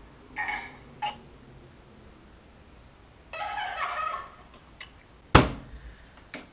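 A few short, high-pitched cries, then a longer one about halfway through, followed by a single sharp thump shortly before the end.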